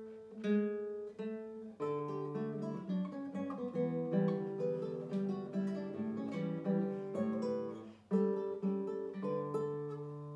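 Classical nylon-string guitar played solo, fingerpicked: a few single plucked notes, then from about two seconds in a fuller passage with bass notes under the melody. A brief gap near eight seconds before the playing goes on.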